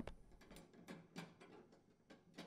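Near silence with a few faint, short clicks from a Phillips-head screwdriver turning out the screws that hold a gas range burner base to the cooktop.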